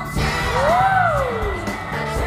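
Dance music playing, with one long sliding call about half a second in that rises and then falls in pitch over about a second.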